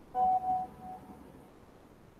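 Short electronic notification chime from the computer: a few clear tones that sound twice and then repeat more faintly, fading out within about a second.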